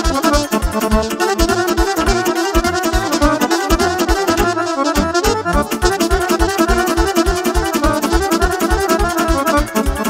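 Live instrumental dance music: a Roland digital accordion and a saxophone playing a fast melody together over a steady, quick beat.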